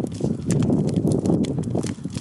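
Large wood bonfire burning, crackling and popping with many sharp, irregular snaps over a dense low rumble.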